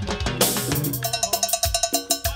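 Live Latin dance band playing an instrumental stretch between vocal lines: drums and bass keep the beat, and from about a second in a cowbell ticks in a fast, even rhythm.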